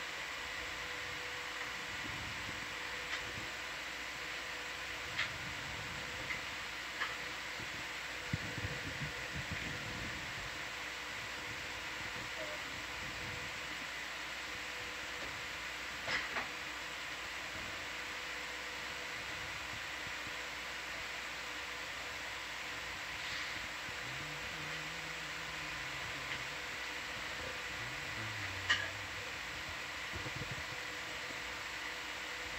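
Steady electrical hum and hiss of control-room equipment, with a few faint clicks scattered through it.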